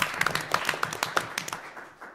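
A small group of people clapping, a brief round of applause that thins out and fades near the end.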